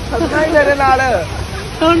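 A person talking over the babble of a crowd.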